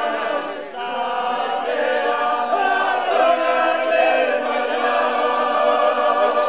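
Fulni-ô men's sacred chant to Mother Earth: several men's voices singing together, unaccompanied, in long held notes, with a brief break under a second in.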